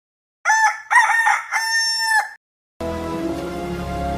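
A rooster crows once, a call of about two seconds starting half a second in. Music with sustained tones begins near the end.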